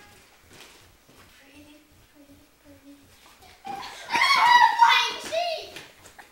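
A young girl's voice: faint low murmuring, then about three and a half seconds in, loud, high-pitched shouting or squealing for about two seconds.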